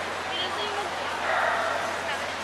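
A dog gives short high yips, over indistinct voices.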